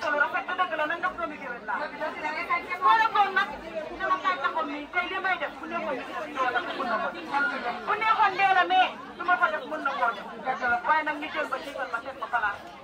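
Chatter: several people talking over one another, with no pause.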